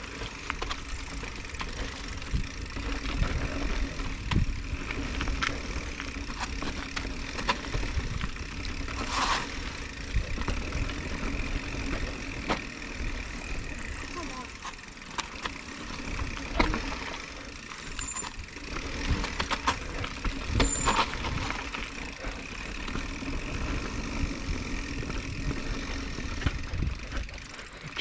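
Mountain bike riding down a dirt trail: a steady rumble of tyres on packed dirt and wind on the microphone, with a few sharp knocks from bumps, the clearest about nine and twenty-one seconds in.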